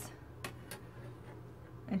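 Two light clicks about a quarter of a second apart as a metal ruler is shifted against the tabletop.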